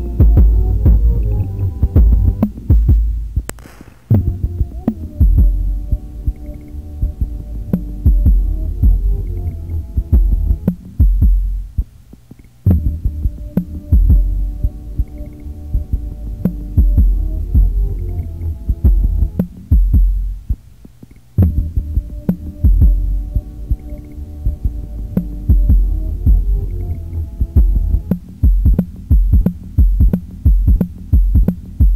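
Live electronic beat played on hardware samplers and an analog synthesizer: a heavy, throbbing bass pulse under a pitched sampled loop that cuts out briefly and restarts about every eight and a half seconds.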